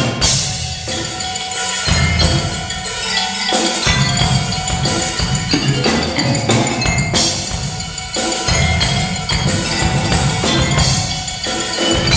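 Live percussion ensemble playing a metal song arranged for drum kit, electric bass and mallet instruments: marimba, xylophone, vibraphone and bells play the melody over a driving drum-kit beat, with cymbal hits near the start and about seven seconds in.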